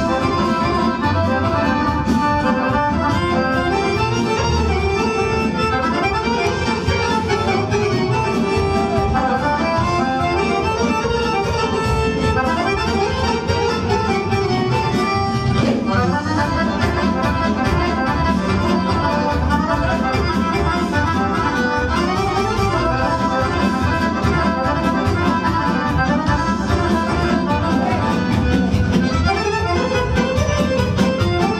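Button accordion playing a lively folk dance tune, with a steady bass pulse under the melody.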